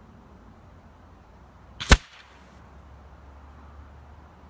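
A single sharp crack from a shot of a .30-calibre Rapid Air Weapons air rifle, with a smaller click just before it and a short hiss trailing after. Wind rumbles on the microphone throughout.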